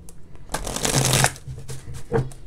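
A deck of oracle cards shuffled by hand: a burst of rustling from about half a second in, lasting under a second, with fainter card scraping around it.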